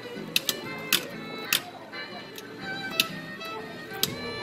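Music playing while a string-operated Woody marionette dances on a wooden stage floor. Its boots make sharp, irregular clicking taps, several in the first two seconds.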